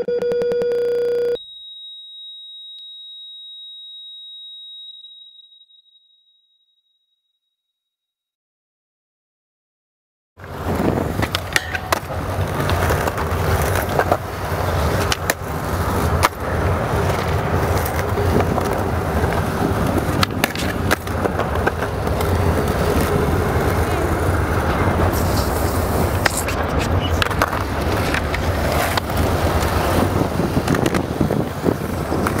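A heart-monitor beep that holds on as a long, unbroken flatline tone, then gives way to a higher steady tone that fades away over a few seconds. After a few seconds of silence, about ten seconds in, skateboard wheels start rolling on concrete, with sharp clacks from the board's tricks and landings, and this runs on steadily.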